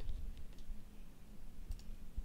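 A few faint clicks from a computer keyboard and mouse, over a low steady hum.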